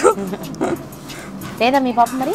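A woman's voice speaking a short phrase near the end, after a quieter stretch of low background chatter.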